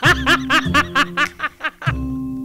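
A quick run of rapid, high laughter syllables over the start of outro music with a steady bass note.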